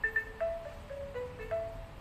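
A short intro jingle played on a xylophone-like mallet instrument: a quick melody of about seven single notes, stepping up and down.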